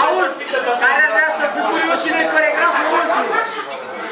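Several people talking at once: overlapping chatter and conversation among party guests in a room.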